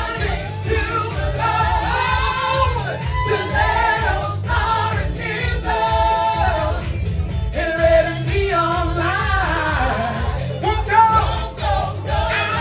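A live dance-pop song from a stage musical: a lead singer with backing singers over a steady, pulsing bass beat.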